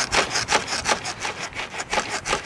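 A Lectric e-bike rocked back and forth in the clamps of a hitch-mounted bike rack, its frame and the rack's arms rubbing and scraping in a quick series of strokes, about four or five a second. The bike shifting in the rack shows the clamps do not hold it firmly.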